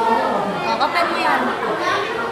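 Girls' voices chattering.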